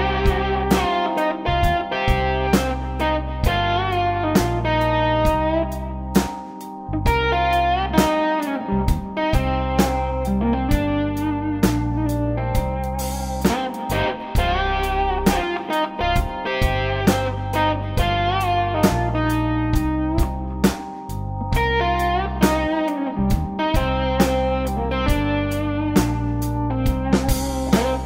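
Blues-rock band playing an instrumental passage: electric guitar lead lines over sustained Hammond organ chords and a drum kit keeping a steady beat.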